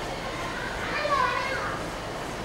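Children's voices calling in the background, with one high call about a second in.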